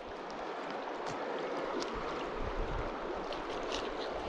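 Steady rushing of flowing river water, with a few faint clicks.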